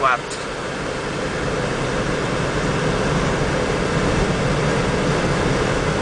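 Steady road and engine noise heard inside a moving car's cabin, slowly getting louder.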